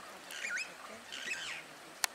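A wild bird calling: two short phrases of swooping whistled notes, about half a second in and again about a second later.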